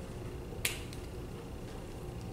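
A single sharp click a little over half a second in, over a steady low room hum.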